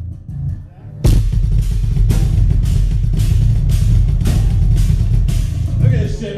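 Loud live band playing through a club PA: heavy drums and bass guitar, with full-on hits about twice a second over a steady low bass, kicking in about a second in after a quieter fade-in.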